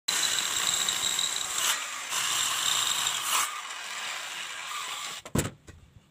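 Handheld electric circular saw running and cutting along a board of sawo Jawa wood, a steady high whine over the cutting noise, easing off after about three and a half seconds. It cuts out a little after five seconds, followed by a couple of sharp knocks.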